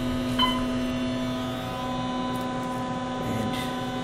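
Steady electrical hum inside an elevator cab, with one short beep about half a second in.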